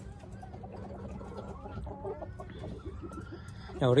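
Chickens clucking quietly in a backyard coop, a series of short, faint calls.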